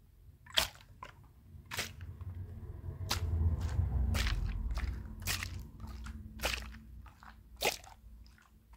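Close-microphone ASMR handling: a sponge rubbed and squished against the microphone, with a low rumbling for about two seconds in the middle. Sharp taps and crackles come every second or so.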